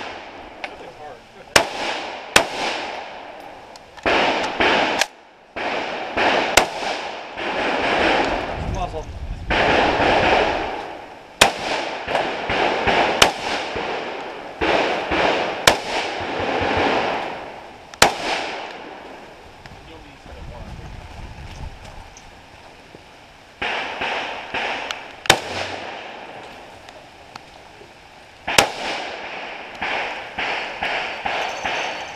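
Saiga semi-automatic firing single shots at irregular intervals, often a second or more apart, with longer gaps of a few seconds between groups of shots.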